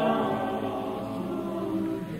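A madrigal choir singing in sustained chords. The sound thins out about half a second in and swells again near the end.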